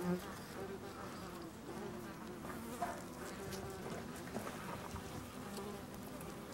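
Hornets buzzing, a faint wavering drone, with a few faint clicks.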